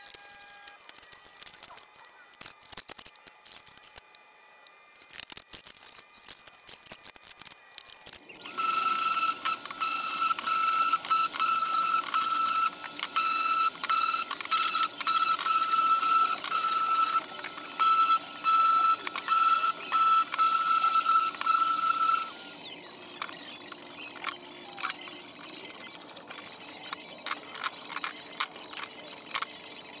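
Scattered light taps and clicks as a glued shaker door frame is tapped tight in bar clamps with a mallet. About eight seconds in, a Festool Rotex sander starts and runs with a steady high whine for about fourteen seconds, smoothing maple drawer heads to take off residual mill marks, then stops abruptly, followed by light handling clicks.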